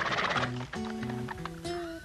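A horse gives a short neigh in the first half second, over background music of steady held notes.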